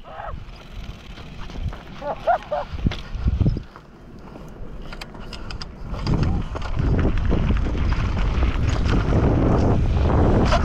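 Wind rushing over the camera microphone and the tyres of a Pivot Phoenix carbon downhill mountain bike rolling over a dry gravel dirt trail, with scattered clicks and rattles of the bike. The rumble grows louder and steadier about six seconds in as the bike picks up speed.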